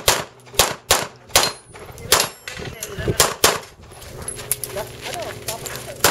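A rapid string of handgun shots fired during a practical-shooting stage, many in quick pairs, with fewer and fainter shots in the last two seconds.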